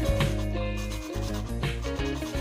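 A small PVC piece being rubbed by hand on sandpaper wrapped around a wooden block, a sanding sound, heard under background music.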